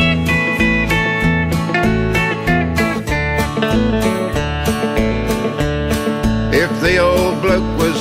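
Instrumental intro of an Australian country bush-ballad song: acoustic guitar and bass over a steady beat, with a wavering melody line entering near the end.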